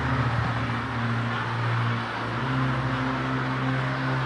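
Held low music chords that shift pitch a couple of times, under the diffuse, wordless noise of a congregation praying aloud together in groaning prayer.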